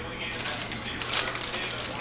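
Plastic pepperoni packet crinkling as it is handled and opened, with a few sharp crackles about halfway through, over a low steady hum.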